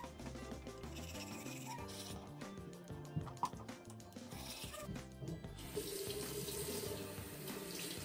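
Bathroom sink tap running water into the basin, with background music; the flow grows markedly louder about five and a half seconds in.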